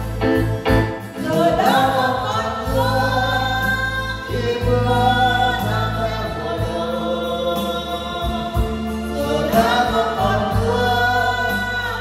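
Vietnamese ballad sung live by a male and female duet over electronic keyboard accompaniment. Long held sung notes come in about two seconds in and again near the end, over a steady bass line.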